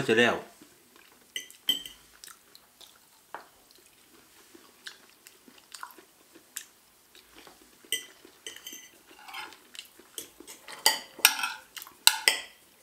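Knife and fork clinking and scraping on a china plate while eating, in scattered light clicks that grow busier and louder near the end.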